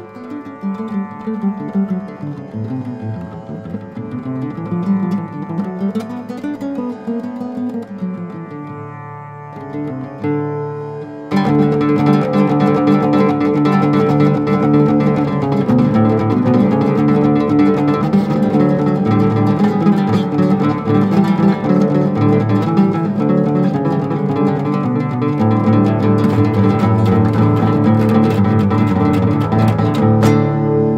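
Fingerpicked nylon-string flamenco guitar music. A quieter passage with gliding notes gives way suddenly, about 11 seconds in, to a louder, fuller section.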